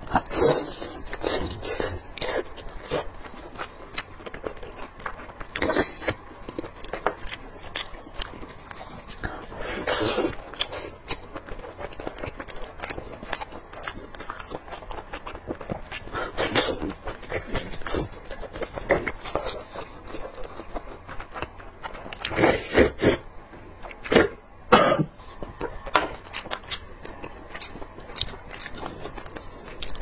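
Close-miked chewing and biting of spicy braised lamb shank meat: steady wet mouth clicks and smacks, with louder bites every few seconds.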